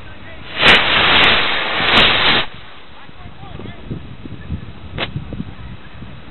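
Model rocket motor of a scale V2 rocket firing with a loud rushing hiss for about two seconds, while the rocket fails to climb and skids off along the grass: a failed launch. A single sharp pop follows about three seconds later.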